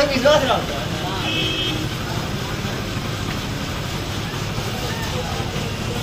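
Steady background street traffic noise with faint voices near the start, and a short high-pitched tone about a second and a half in.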